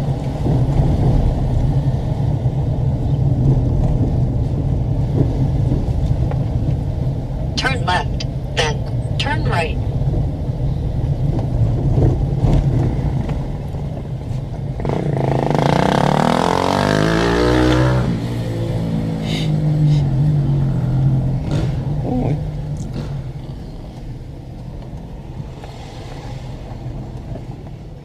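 Steady low engine and road hum heard from inside a car driving slowly. About 15 seconds in, a motorcycle passes close by: its engine is loud for about three seconds and falls in pitch as it goes past.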